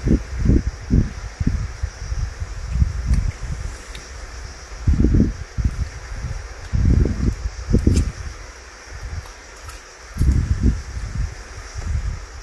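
Wind gusting against the microphone in irregular low rumbling buffets of a second or less, over a faint steady high hiss.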